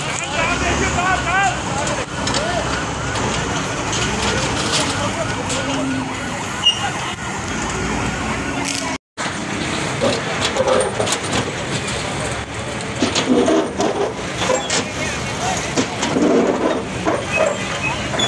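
Samsung excavator demolishing shop structures: its diesel engine runs under repeated crashes and clatter of metal sheets and debris. Raised voices of an onlooking crowd are mixed in.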